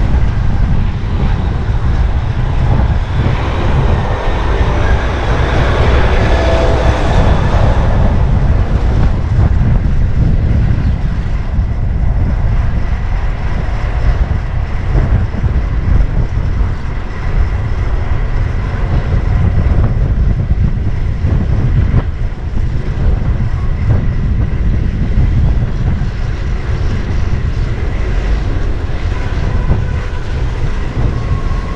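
Wind rushing and buffeting over the microphone of a camera on a moving bicycle, a steady deep rumble, mixed with the noise of city traffic around it. The traffic noise swells between about three and eight seconds in.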